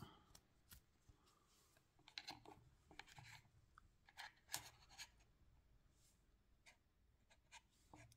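Faint handling sounds: a few scattered soft clicks and scrapes as a smartwatch and its band are fitted onto a charging cradle, with near silence between them.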